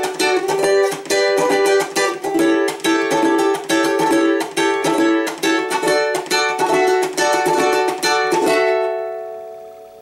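Venezuelan cuatro strummed in a steady, rapid rhythm of chord strokes. Near the end a final chord is left ringing and fades away.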